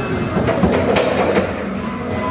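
Grape receival hopper and destemmer running with a dense mechanical clatter, with a few sharp knocks about a second in.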